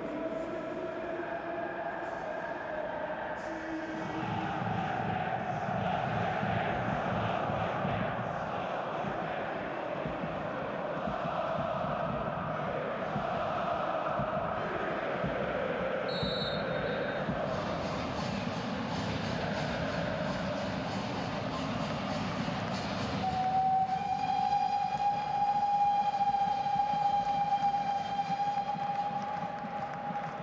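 Football stadium crowd singing and chanting, with a brief shrill whistle about halfway through. Near the end a long steady horn blast is held for several seconds over the crowd.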